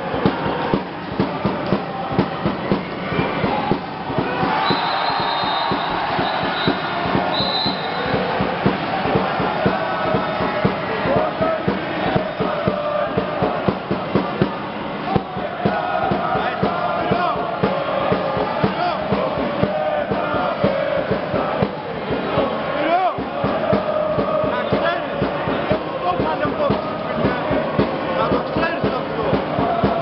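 A crowd of fans chanting and singing together in a sports hall, with many short sharp knocks all through, such as claps or ball bounces.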